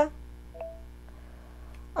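A single short electronic beep from a tablet: Alexa's listening tone, sounded after the wake word "hey Alexa".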